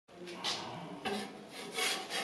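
Metal pizza peel scraping over the refractory stone floor of a small steel pizza oven as it is pushed under a pizza: three short scrapes.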